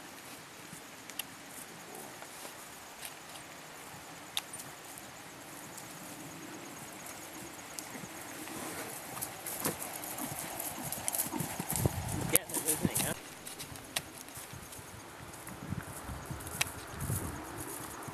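A horse cantering on turf: dull hoofbeats that grow louder as it passes close, loudest about two-thirds of the way through, then fade.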